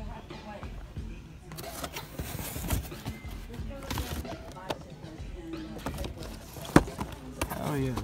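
Cardboard Funko Pop boxes with plastic windows being handled and shuffled in a shopping cart: rustling, scraping and knocks, with one sharp knock near the end.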